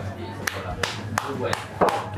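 Four sharp taps spread over two seconds, with faint voices underneath.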